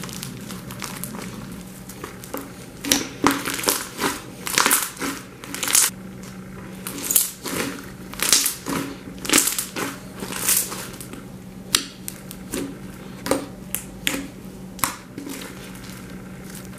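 Purple slime packed with small pink beads being squeezed, stretched and pressed by hand, giving an irregular run of crackling pops and squelches that starts a couple of seconds in.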